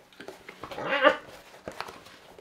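A person's wordless voiced call, about a second long, rising and then falling in pitch, followed by a couple of faint clicks.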